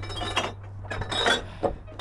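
Hand-pumped brake windlass working: several sharp metallic clinks with a ringing tail as its iron pawls, ratchet and chain take each stroke of the handles. A steady low hum runs underneath.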